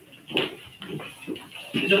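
Quiet, indistinct talking in a large meeting room, in short broken phrases.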